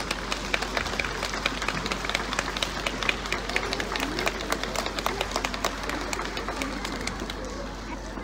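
Outdoor audience applauding: many hands clapping in a dense patter that thins out toward the end.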